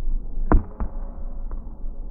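Basketball impacts: three sharp hits, the first about half a second in and the loudest, followed by a lighter one and a weaker one about a second in, with a brief ring after the first. A steady low rumble runs underneath.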